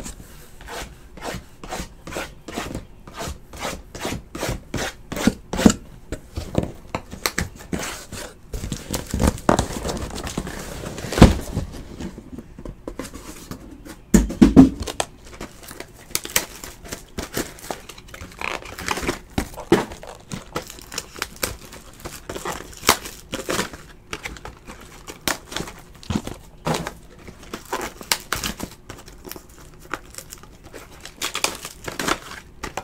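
Trading card boxes and foil packs being handled and opened by hand: a busy run of small clicks, rustling and wrapper crinkling, with a couple of louder knocks about eleven and fourteen seconds in.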